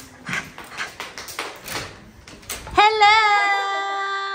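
Clicks and footsteps as a hotel-room door handle is worked and the door swings open, then a woman's loud, drawn-out greeting cry from about three seconds in, wavering at first and then held steady.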